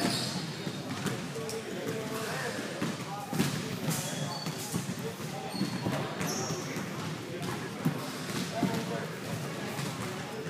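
Basketball game in a gym: a basketball bouncing on the hardwood court as a series of echoing knocks, with a few short high shoe squeaks, over the steady indistinct chatter of spectators in the large hall.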